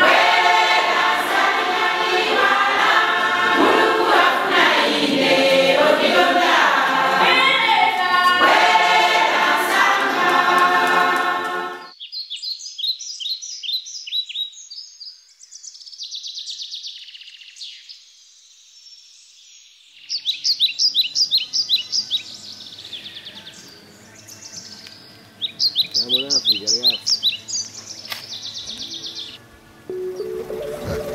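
A church choir of women singing together, cut off abruptly about twelve seconds in. After that, birds call in bouts of rapid high trills, separated by quieter stretches.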